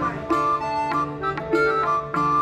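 Background folk music: a flute-like melody held over plucked strings.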